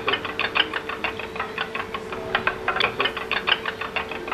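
A metal spoon beating eggs in a stainless steel bowl, clinking against the bowl's side in a fast, even rhythm of about eight strokes a second.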